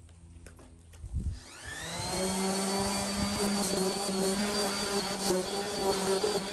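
A small electric motor spinning up about a second in, whine rising and then running steady, after a low thump and a few light knocks.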